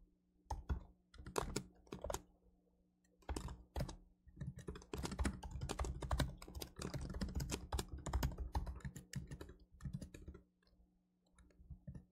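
Typing on a computer keyboard: a few scattered keystrokes, a short pause, then a quick run of typing lasting several seconds that thins out near the end.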